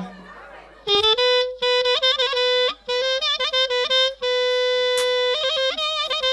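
Live band music starts about a second in, after a quieter moment: a single reed instrument plays a fast, heavily ornamented melody with long held notes.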